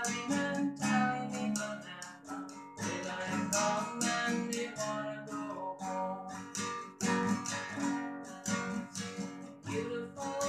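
Yamaha nylon-string classical guitar strummed in a steady rhythm, chords ringing between repeated strokes.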